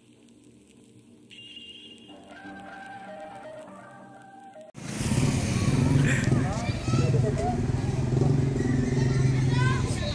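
Quiet music with a few held notes, cut off abruptly about five seconds in by loud street sound: a steady low engine hum, as of a vehicle idling, with voices talking over it.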